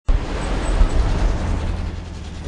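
Road traffic: cars driving past on a busy multi-lane city street, a continuous noise of engines and tyres with a deep rumble.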